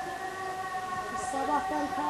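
A voice chanting in long held notes that step from one pitch to another, growing louder about halfway through.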